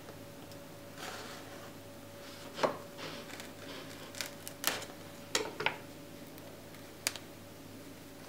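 A knife halving chocolate-coated marshmallow treats on a wooden cutting board: about six small, sharp clicks and taps, spread across a few seconds, over a faint steady hum.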